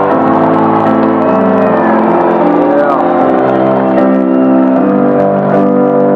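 Live amplified piano playing sustained chords that change every second or two, heard through an arena PA. A few audience shouts or whistles rise over it in the first half.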